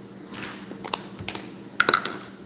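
Irregular light clicks and knocks of small plastic play-dough tubs being handled on a wooden table, a few scattered taps with the loudest pair near the end.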